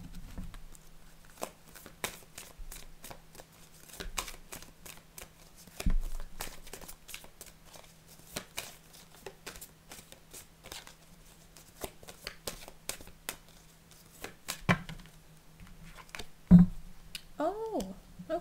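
An oracle card deck being shuffled by hand: a long run of quick, soft card clicks, broken by a few louder thumps as the deck meets the table.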